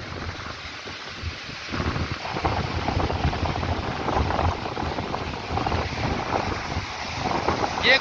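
Indus floodwater rushing through the Kotri Barrage in high flood, a steady rush mixed with wind buffeting the phone microphone. It grows louder about two seconds in.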